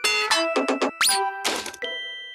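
Cartoon music and sound effects: a run of short, bright chime-like strokes, with a quick rising squeaky whistle about a second in.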